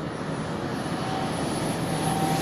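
Small fixed-wing airplane's engine at full power on takeoff, growing steadily louder as it climbs out over the runway.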